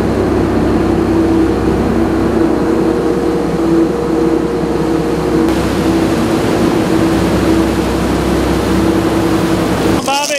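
Sportfishing boat's engines running steadily underway, a constant drone with a held hum, over the rush of water and wind.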